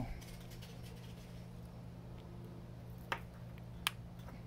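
The rubber seal of a Tesla rotor's SKF hybrid ceramic bearing being pressed in by thumb, snapping into place with two sharp clicks about three seconds in and just before the end. A faint steady low hum sits underneath.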